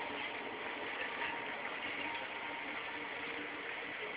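Steady city street background noise, a continuous hum of traffic with no single sound standing out.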